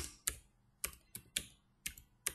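Computer keyboard typing: about six separate keystrokes in two seconds, unevenly spaced.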